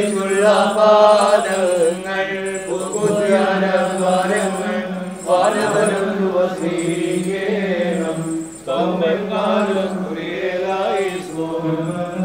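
Orthodox liturgical chant: a melodic hymn sung over a steady low held drone note, the vocal line rising and falling in phrases of a second or two.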